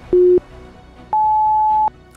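Workout interval timer countdown: a short low beep, then about a second later a longer, higher beep that marks the start of the work interval.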